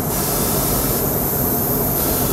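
Steady, even hiss of rushing air, like a running fan.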